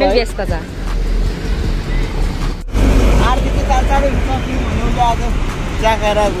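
Steady road-traffic rumble beside a busy street, with people's voices talking over it. The sound cuts out for an instant about two and a half seconds in.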